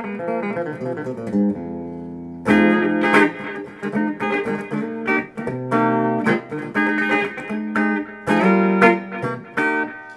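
Korean-made Guild DeArmond Starfire hollowbody electric guitar played on its bridge pickup. Picked notes and chords, with one chord left ringing about a second and a half in, then a run of chords picked in quick strokes.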